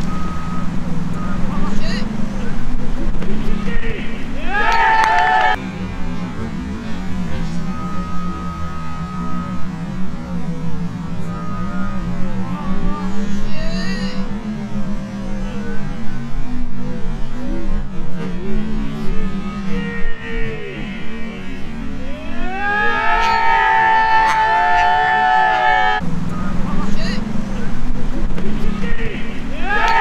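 Players shouting on an outdoor football pitch over steady wind noise on the microphone, with a longer run of loud, rising-and-falling shouts about three quarters of the way through.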